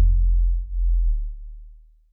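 Deep sub-bass note of a bass-music track dying away as the track ends. It dips briefly under a second in, then fades out to nothing.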